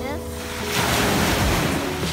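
Small waves breaking and washing up a sandy beach, the rush of surf swelling about a third of the way in. Background music plays underneath.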